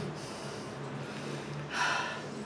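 A man breathing in sharply once near the end, a short breathy rush, over a low steady hum.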